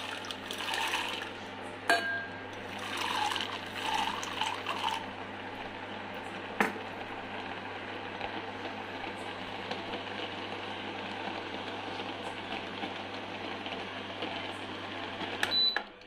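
Dried green peas poured into a steel bowl of water to soak, splashing and plopping in bursts for the first five seconds or so. There are two sharp clicks, about two and six and a half seconds in, and then a steady low hum for the rest.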